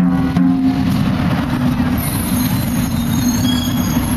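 Heavy city street traffic: a steady low engine rumble from passing vehicles, with a high-pitched hiss coming in about halfway through.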